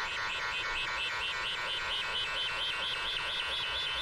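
Breakdown in a hardtek track: the kick drum and bass have dropped out, leaving a fast repeating synthesizer line with its highest frequencies filtered off.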